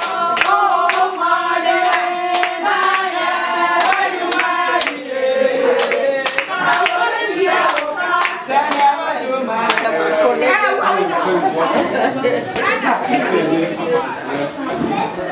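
Women singing unaccompanied with steady rhythmic hand clapping, about two claps a second.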